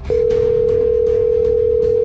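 Telephone ringback tone: one long, steady ring tone heard as an outgoing call rings at the other end.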